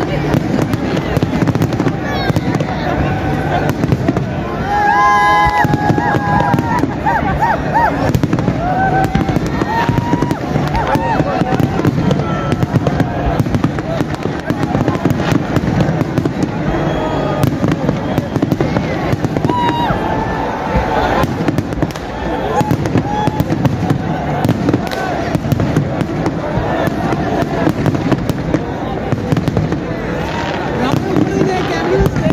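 Fireworks display: a continuous barrage of bangs and crackling bursts, with many voices from the crowd mixed in.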